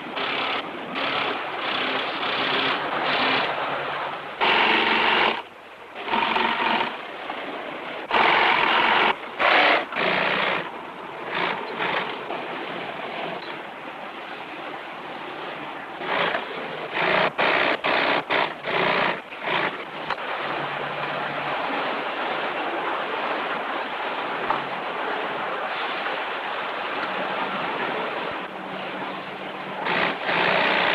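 Industrial sewing machines running in short stop-start bursts, each a second to a few seconds long, over a steady machine din.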